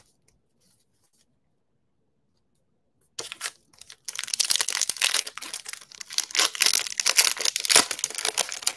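Near silence for about three seconds, then the foil wrapper of a Donruss football trading-card pack crinkling and being torn open, a dense crackling rustle.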